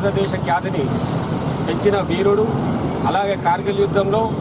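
A man speaking Telugu into a microphone, over low street traffic noise.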